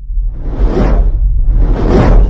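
Cinematic logo-intro sound effect: two swelling whooshes, about a second apart, over a loud, deep rumble.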